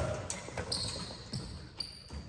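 A basketball in a large gym: several separate knocks as the ball comes off the rim and bounces on the hardwood floor, with short high sneaker squeaks on the court between them.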